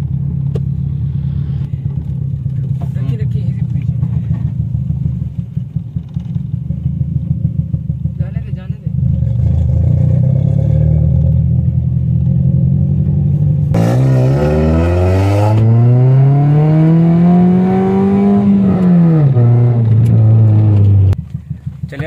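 Toyota Corolla E140 engine heard from inside the cabin, droning steadily while cruising. About 14 seconds in, the revs climb smoothly under acceleration, peak about four seconds later, and fall back as the throttle is eased. The engine holds steady briefly, then drops away near the end.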